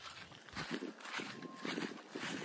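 Footsteps walking across a grass lawn, a steady run of soft steps starting about half a second in, with a faint short beep partway through.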